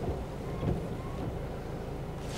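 Low, steady rumble of a car idling at the curb, heard from inside the cabin.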